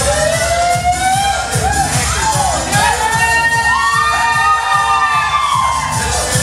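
Dance music with a steady beat, with people in the room whooping and cheering over it in long, sliding shouts.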